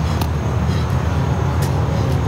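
A steady low outdoor rumble, like traffic or wind noise, with a couple of sharp knocks about a second and a half apart.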